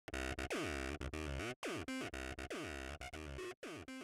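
Intro music with repeated falling pitch swoops, about one a second, broken by short gaps.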